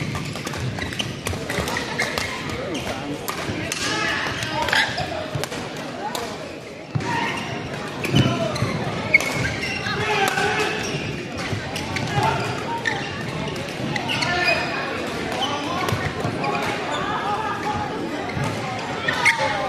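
Badminton rackets hitting shuttlecocks in a large hall: many short sharp hits scattered through, from this court and neighbouring ones, mixed with the voices of players and onlookers.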